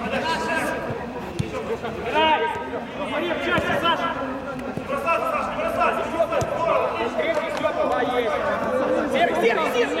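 Several men's voices calling and talking over one another as players and onlookers chatter during a football game, with a few short knocks of the ball being played.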